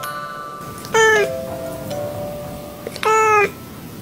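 A cat meows twice, short calls about two seconds apart, over soft background music.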